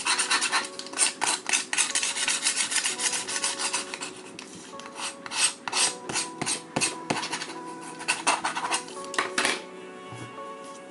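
Something rubbed briskly back and forth across the cover of a hardcover book, making rapid scratchy rasping strokes. The strokes come thick and fast for the first few seconds, then thin out to scattered strokes and stop shortly before the end.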